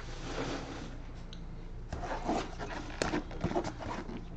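Cardboard box being handled and slid, with rubbing and scraping of the cardboard and a sharp tap about three seconds in.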